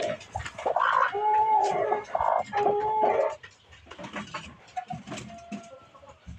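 Chickens calling: two drawn-out calls held at a steady pitch in the first half, then quieter scattered calls and clicks.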